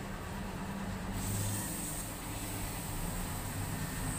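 Steady low background hum, with a thin high-pitched hiss joining about a second in.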